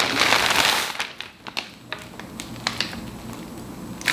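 Plastic wig packaging crinkling and rustling as it is handled, loudest in the first second, then a scatter of quieter crackles.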